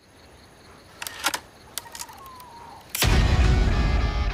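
Mechanical clicks of a film camera's shutter and film-advance lever, several in quick succession and a couple more a little later. About three seconds in, a sudden loud, deep rumbling sound cuts in and carries on.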